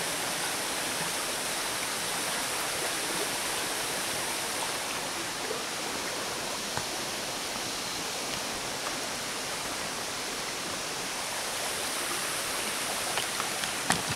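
Water of a shallow creek running over flat rock ledges: a steady, even rushing. A few faint clicks come near the end.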